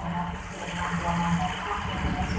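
Railway station platform ambience: a steady low hum under a noisy background haze, with faint distant voices.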